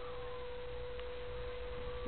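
A steady electrical tone held on one pitch over a low background hum, with nothing else heard.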